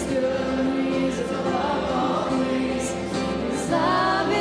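Live worship music: a woman singing lead over acoustic guitar, a hand drum and piano.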